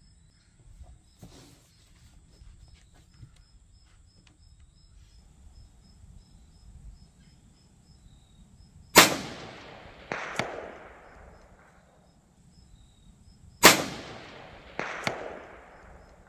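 Two shots from a .17 HMR rifle, a Savage 93R17, about four and a half seconds apart. Each is a sharp crack that echoes away over a couple of seconds, with a quieter sharp report about a second after it.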